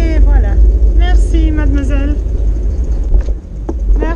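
Wind rumbling on the microphone of a camera on a moving bicycle, with a voice talking over it in the first two seconds. The rumble eases a little over a second before the end.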